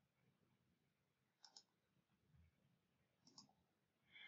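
Near silence broken by a few faint computer mouse clicks: two in quick succession about a second and a half in, and one more near the end.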